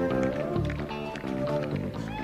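Live rock band music, with a flute played into a stage microphone over the bass, keyboards and drums.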